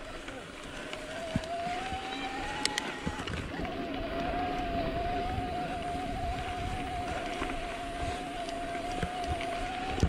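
Mountain bike rolling along a gravel dirt track: tyre noise on the dirt and wind on the microphone, with a steady hum that rises a little over the first few seconds, breaks off briefly, then holds steady.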